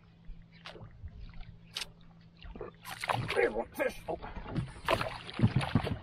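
Water splashing and sloshing as a hooked musky thrashes at the surface beside a fishing boat, with knocks and clatter in the boat. It starts with a few faint ticks and grows louder and busier from about three seconds in.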